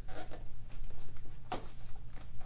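A thumbnail scraping and picking at small packaging, trying to pry it open, with light scratchy rubbing and one sharp click about one and a half seconds in.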